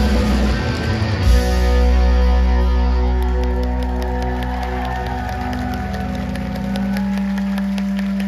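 Live rock band with electric guitars and bass playing the end of a song. About a second in they strike a final chord, and its held guitar and bass tones ring on and slowly fade.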